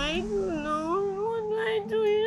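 A young woman crying aloud: one long, wavering wail that rises slightly in pitch, over a steady low hum.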